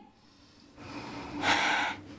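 A woman's sharp, noisy huff of breath, short and loud, about one and a half seconds in, as a reaction in a heated argument. A faint steady low hum runs beneath it.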